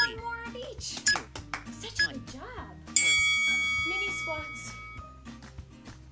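Background workout music with a steady beat and a voice in the first half. About three seconds in, a bright bell-like chime strikes and rings out, fading over about two seconds.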